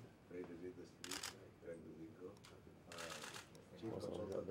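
Faint, indistinct conversation, with two short bursts of rapid camera-shutter clicking about one second and three seconds in.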